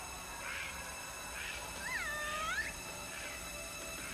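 A caged monkey's single call, pitched and under a second long, about two seconds in: it rises, dips to a held tone, then rises again. Short faint chirps repeat about once a second around it.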